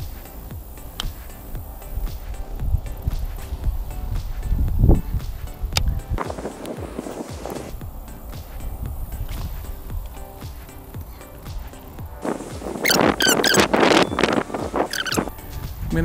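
Wind buffeting the microphone, with the whir and clicks of a baitcasting reel being cast and cranked. A louder stretch of reel whirring comes in the last few seconds.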